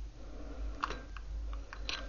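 A few light clicks and taps from a hot glue gun and glass bottles being handled on a table, over a low steady hum: a cluster about a second in and another near the end.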